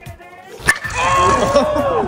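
A metal baseball bat cracks sharply against a ball about two-thirds of a second in, followed by loud shouting from the people watching, with music underneath.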